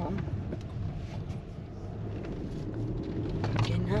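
Car cabin noise while driving: a steady low hum of engine and tyres on the road, heard from inside the car.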